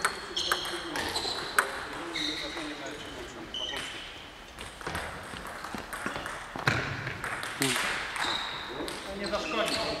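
Table tennis balls clicking off tables and bats at irregular intervals, several hits ringing briefly, in a large echoing sports hall, with a heavier knock about two-thirds of the way through.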